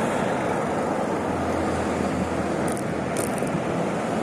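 Steady city road traffic noise with wind and tyre rumble, heard from a moving bicycle; a low engine hum from a passing vehicle rises in the middle and fades.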